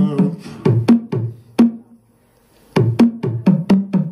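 Sparse percussive backing of a live solo song: short struck, wood-block-like notes with a low pitched thud, several a second, between sung lines. The pattern breaks off to near silence for under a second around the middle, then starts again.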